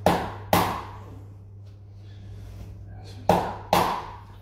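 A mallet striking a wooden peg held against a person's back: four sharp knocks in two pairs, each pair about half a second apart, the first pair at the start and the second near the end. A faint steady hum sits underneath.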